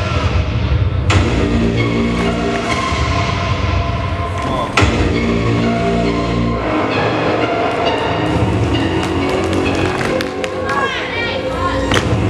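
Dramatic recorded music with sustained layers and a deep bass that drops out about two-thirds of the way through. Two sharp hits land about one second and about five seconds in.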